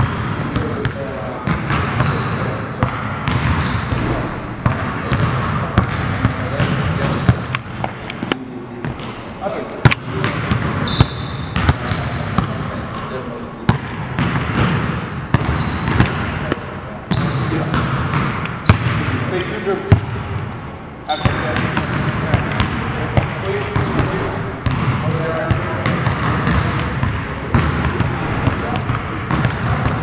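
Several basketballs dribbled on a hardwood gym floor, with rapid overlapping bounces and short high sneaker squeaks as players cut between cones.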